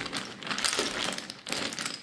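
Rune pieces clicking and rattling together inside a cotton drawstring bag as a hand rummages through them to draw one, mixed with the rustle of the cloth.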